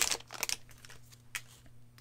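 Trading cards and pack wrapper being handled: a short run of crinkling rustles in the first half second, then a lone soft click over a faint steady hum.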